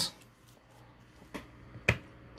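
Two short plastic clicks about half a second apart near the end, the second louder: a plastic action figure being handled and set down on a display base.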